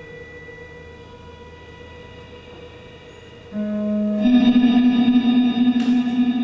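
Live band music: electric guitars through effects play long sustained, echoing notes. A few quiet held tones ring for about three and a half seconds, then louder guitar notes come in and the sound swells.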